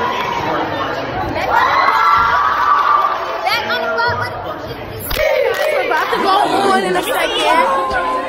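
A group of girls chattering and calling out over each other. About five seconds in, it switches to the chatter of a larger crowd.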